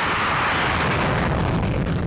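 A loud, dense rush of noise over a deep rumble, with no tone or beat in it, easing off at the very end.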